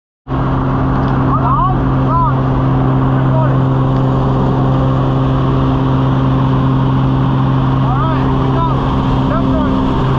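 Steady drone of a small jump plane's engine and propeller heard from inside the cabin, a constant low hum. A few short chirps rise and fall over it about a second in and again near the end.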